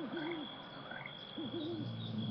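Two short, low hooting calls, each rising and then falling in pitch: one at the start and one about a second and a half in. A steady high, thin insect-like tone runs under them.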